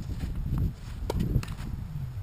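A few sharp knocks from tennis play on a hard court, over a steady low rumble.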